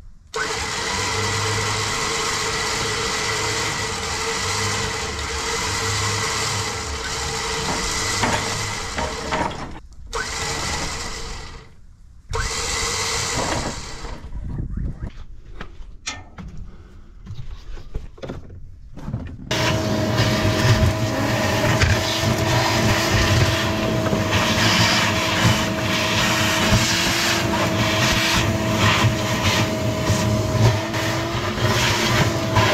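A steady machine drone in several cut-together stretches, then, in the last third, a shop vacuum starting up and running steadily with a slightly wavering whine as it sucks oily grime and metal debris out of the excavator's open swing gear housing.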